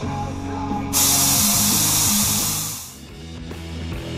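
Background rock music, with a loud burst of hissing from a compressed-air gun on a shop air hose that starts suddenly about a second in and fades out just before three seconds.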